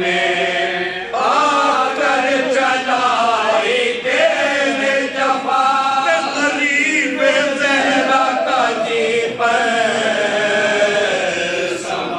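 A group of men chanting a marsiya (Urdu elegy) together without accompaniment: a lead reciter joined by a small chorus of supporting voices, singing long, bending melodic lines with short breaks between them.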